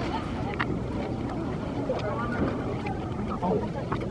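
Indistinct voices of several people talking in the background, with a few short clicks over a steady low rumble.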